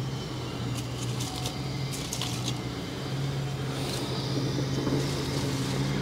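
A steady, low, fixed-pitch machine hum, like a motor running, with a few faint light ticks.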